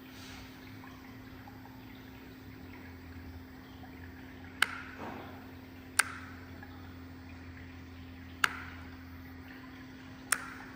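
A faint steady hum, with three sharp clicks about four and a half, six and eight and a half seconds in.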